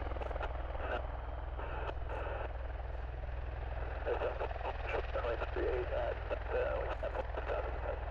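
Boeing RC-135's jet engines running as it rolls down a wet runway: a steady low rumble with a haze of engine noise. From about halfway in, air-traffic radio chatter sounds over it.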